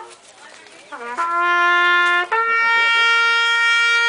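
A solo brass horn playing a slow funeral tribute in long held notes. After a short pause it comes back about a second in with a brief rising lead-in and holds a lower note for about a second, then steps up to a higher note that it holds steadily to the end.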